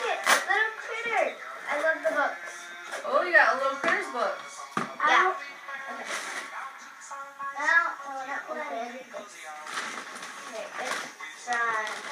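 Indistinct voices talking over each other, with music underneath.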